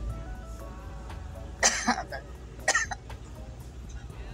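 Two sharp coughs about a second apart, over music from the car stereo and a steady low road rumble inside the car cabin.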